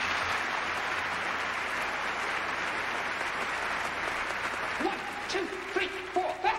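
A large theatre audience applauding, a steady sustained ovation. Near the end, music with taps begins under the fading applause.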